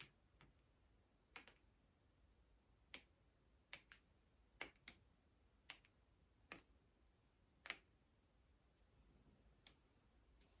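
Near silence broken by about ten faint, sharp clicks at irregular intervals, two of them close together near the middle.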